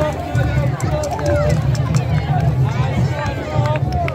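Outdoor crowd chatter: many overlapping voices talking and calling out, over a steady low rumble.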